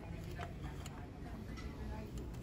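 Glass Christmas ornaments in a wicker basket being handled, knocking together in a few faint, light clicks over a low steady background rumble.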